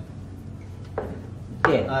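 White ceramic mugs set down on a table: a sharp knock about a second in and a louder one near the end.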